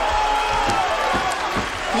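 A commentator's long, drawn-out excited shout over crowd noise from a fight arena, with a few dull thuds during it.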